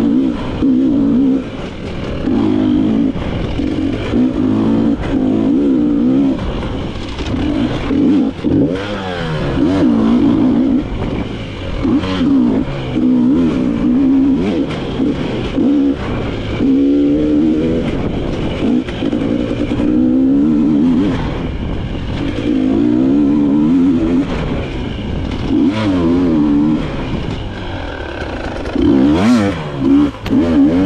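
Dirt bike engine being ridden off-road, revving up and down again and again as the throttle is worked, its pitch rising and falling every second or two. A few sharp knocks break in along the way.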